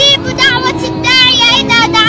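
A boy singing a supplication to God as a drawn-out melodic chant, holding long notes that slide between pitches.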